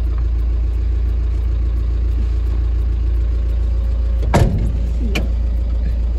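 Car engine running with a steady low rumble, heard from inside the cabin. About four seconds in comes one short, sharp, louder sound, and a fainter click follows a moment later.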